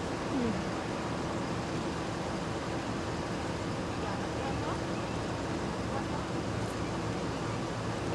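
Steady hum of an idling vehicle engine, with a constant low tone and faint, brief voices over it.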